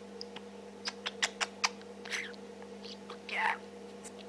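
Budgerigar chattering softly to herself: a quick run of clicks about a second in, then short squeaky warbling chirps, the longest near the end, over a steady low hum.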